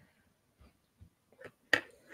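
A single sharp click near the end, after a few faint ticks.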